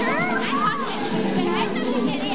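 Dance music playing under a crowd of lively voices, with overlapping talk and high-pitched shouts.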